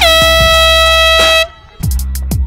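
A loud air horn sound effect held for about a second and a half over the backing music. The music then cuts out briefly and comes back with drum hits near the end.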